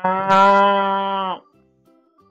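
One long, steady 'moo' lasting about a second and a half, dipping slightly in pitch as it stops, over faint background music.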